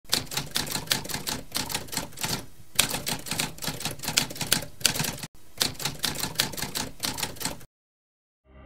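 Typewriter keys clacking in a rapid run of keystrokes. There is a brief pause about two and a half seconds in, and the typing stops just before the end.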